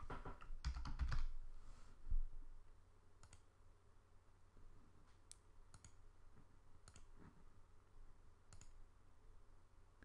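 Faint computer mouse clicks, a few scattered single clicks a second or two apart.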